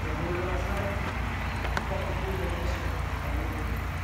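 Steady rushing hiss from an AccuTrak ultrasonic leak detector's earphone output, which sounds like "an ocean of a wind", with a single sharp click about two seconds in.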